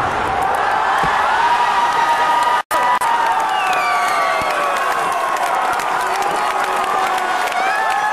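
A large crowd of spectators cheering at a fireworks display, many voices overlapping, with long shouts sliding up and down in pitch. The sound cuts out completely for an instant about three seconds in.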